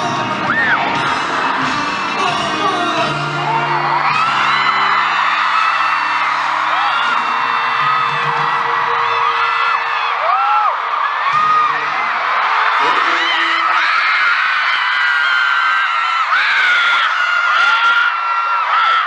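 Live concert sound recorded from among the audience in a large arena. Amplified pop music with sustained low chords fades out about eight seconds in, and a crowd of fans screams and cheers throughout, carrying on after the music stops.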